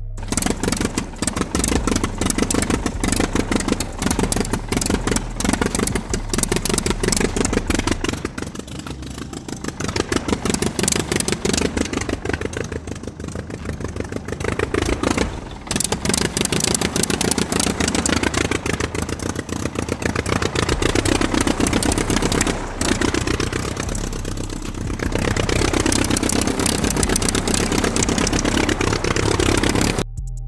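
A small engine-like chugging from a DIY toy diesel locomotive, a fast run of pulses that speeds up and slows down several times.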